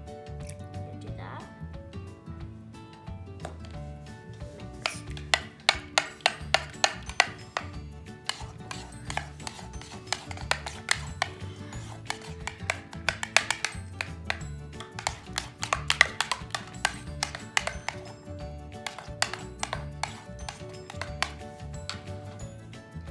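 Background music, with rapid clicking and knocking of a metal spoon against a mixing bowl starting about five seconds in, as glue and contact solution are stirred together.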